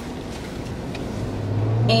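Cabin noise of a Jeep Wrangler on the move: a steady road and tyre hiss, with a low engine drone that comes in about a second in and grows louder.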